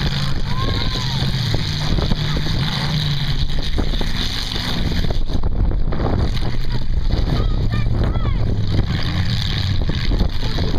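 Demolition derby car engines running hard under load, a steady loud drone that shifts in pitch as the locked cars push against each other and a wheel spins in the dirt, with crowd voices.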